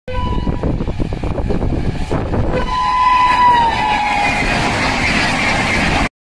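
An express train passing at high speed, with a rapid clatter of wheels over the rails and a long blast on its horn whose pitch drops as it goes by. The rush of the passing coaches grows louder near the end, then cuts off abruptly.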